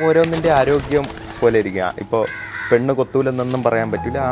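Speech: a man talking steadily.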